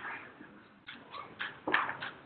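A few short voice sounds from people in the room, separate brief bursts rather than words, the loudest just before the end.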